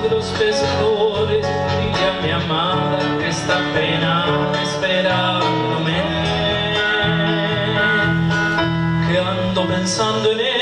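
Live folk song performance: a male singer holds long, wavering notes into a microphone, backed by acoustic guitar and keyboard.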